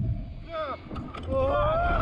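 Riders' voices on a slingshot ride: a short falling cry about half a second in, then a long held shout that rises slightly from midway on. Under it runs a steady low wind rumble on the microphone from the ride's motion.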